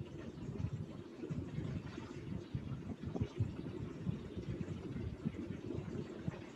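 A low, uneven background rumble with no clear tone or rhythm.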